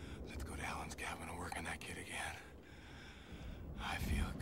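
A man whispering and breathing hard, his words not clear, for about two seconds, then falling quieter.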